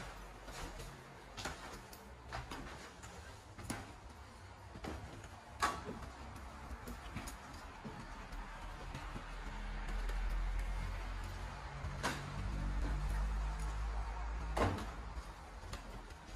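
Irregular footsteps and knocks on a carpeted wooden staircase, a few sharp ones echoing in the empty house, while a low rumble swells in the second half.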